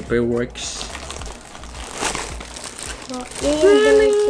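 Clear plastic packaging crinkling and rustling as it is handled, most of the way through; a voice is heard briefly at the start and again near the end.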